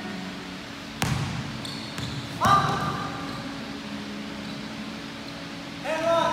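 A basketball bouncing on a hardwood gym floor: a sharp bounce about a second in, and another about two and a half seconds in with a brief pitched sound over it, over a steady low hum.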